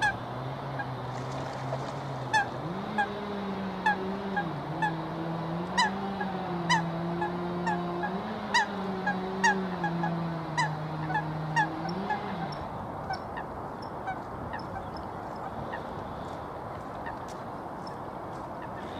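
Short honking bird calls, repeated about once or twice a second, over a steady low motor hum. The hum steps up in pitch a couple of seconds in and wavers, and both fade out about twelve seconds in.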